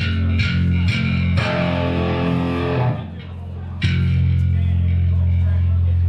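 Live rock band's amplified electric guitar and bass: a run of short, evenly spaced picked hits in the first second or so, a brief drop near three seconds, then a held low bass note ringing steadily from about four seconds in.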